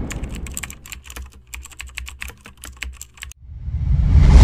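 Typing sound effect: a rapid, irregular run of key clicks that stops abruptly about three and a half seconds in, over a fading low rumble.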